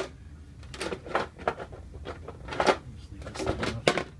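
A run of irregular light knocks and clicks, about eight in four seconds, over a low steady hum.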